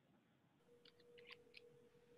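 Near silence: faint room tone with a faint steady hum starting about half a second in and a few faint, quick clicks in the middle.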